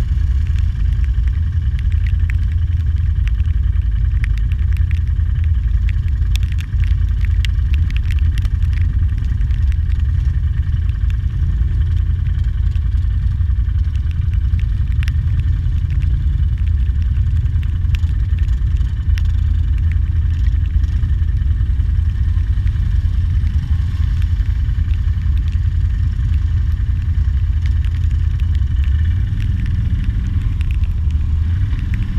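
ATV engine running steadily as the quad ploughs through a muddy, water-filled bog trail, a continuous heavy low rumble, with a cluster of sharp ticks a few seconds in.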